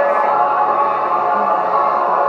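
Many voices singing together like a choir, holding long notes, played back over speakers in a room from a projected film.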